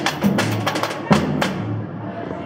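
Samba bateria playing: a large surdo bass drum beating under sharper hand-drum strikes, the last loud stroke a little past a second in and the playing dying away soon after.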